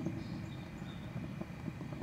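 Newly replaced stainless gas burner tube of a Kenmore grill burning with a low, steady flame rumble on its first test firing.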